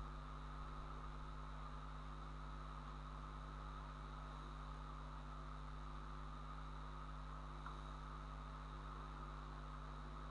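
Steady faint hiss with a low electrical hum: the background noise floor of the recording, with no other sound.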